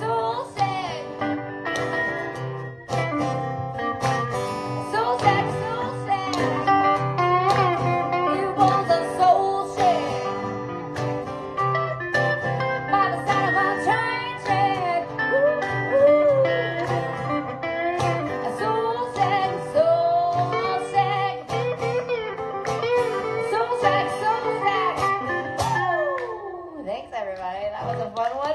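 Live acoustic blues song: two acoustic guitars strummed together with a woman singing. Her voice bends in pitch and falls away in the last couple of seconds as the song winds down.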